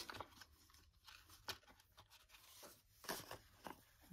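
Faint rustling and crinkling of paper prop banknotes being pulled from a stack and handled, in a few short rustles.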